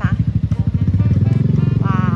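A motorcycle engine running close by as it rides past at low speed, its exhaust pulsing rapidly.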